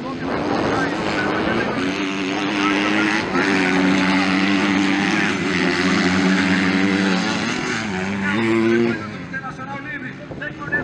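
Motocross dirt bike engines racing on the track, held at high revs with the pitch stepping up and down as the riders shift and roll on and off the throttle, then falling away about nine seconds in.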